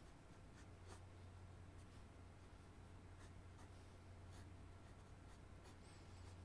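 Graphite pencil scratching on paper in faint, short sketching strokes at an irregular pace, over a low steady hum.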